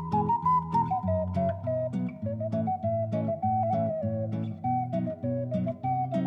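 Background music: a melody over a bass line, with a steady beat of evenly spaced notes.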